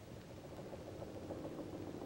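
Faint steady mechanical hum, low and even, with a faint pitched drone in it.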